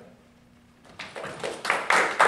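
Hand clapping from a small group of people: a few claps start about a second in and quickly swell into steady applause.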